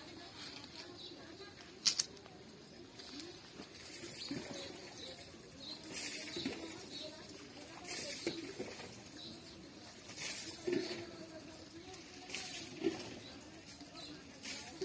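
A cast net being handled and gathered in the hands: short rustling, rattling bursts of the mesh about every two seconds, with a single sharp click about two seconds in.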